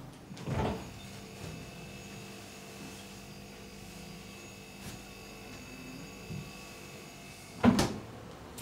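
A household refrigerator door is pulled open with a short rustle as the seal lets go, then a steady electrical hum while it stands open. Near the end comes a loud thump as the door is shut and the hum stops.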